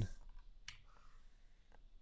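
Quiet room tone with a sharp single click about two thirds of a second in and a fainter click near the end, a pen stylus tapping a drawing tablet.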